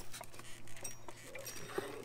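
A knife cutting and scraping packing tape off a new electric trailer jack, heard as light scrapes, rustles and small scattered clicks.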